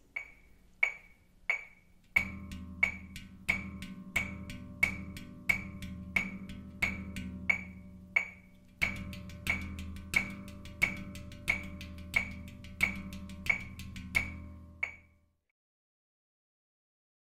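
Metronome clicking steadily at about 90 beats a minute, three clicks every two seconds. From about two seconds in, a handpan joins it: hands tap soft ghost notes on its steel shell, first in eighth notes, then in sixteenths from about halfway, and the taps keep the pan's low body ringing. It all stops shortly before the end.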